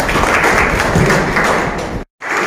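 A room of people applauding, many hand claps blending together, cut off suddenly at the end.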